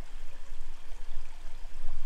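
Steady rushing background noise with a low rumble underneath.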